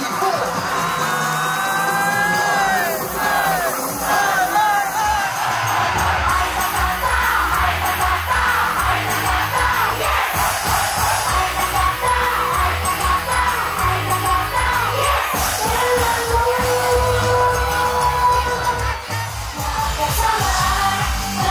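A crowd of concert fans shouting and cheering together, then about six seconds in a pop song with a heavy beat comes in and a girl idol group sings over it with the crowd still audible.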